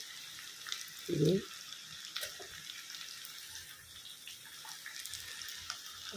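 Drumstick and potato pieces sizzling gently in oil in a kadhai, a steady soft hiss with a few faint clicks. A brief voice sound about a second in.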